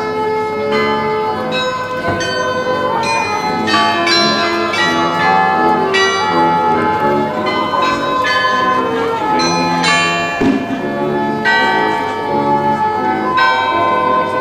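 A slow tune played in full chords, with bell-like ringing notes that start sharply and die away, carrying from a church tower.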